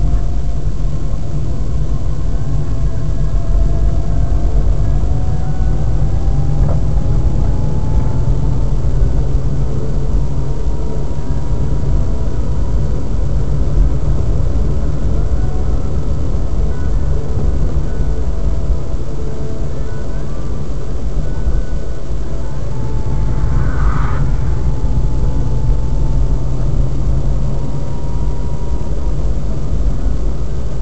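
Car driving, heard from inside the cabin: a steady low engine and road rumble, with a faint whine that rises in pitch over several seconds as the car speeds up. A brief higher-pitched sound comes about 24 seconds in.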